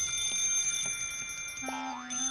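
Telephone bell ringing: a bright metallic ring that starts sharply and holds, with a lower musical note coming in near the end.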